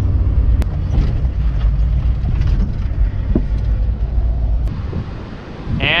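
Steady low rumble of a car driving at road speed, heard from inside the cabin. It cuts off suddenly near the end.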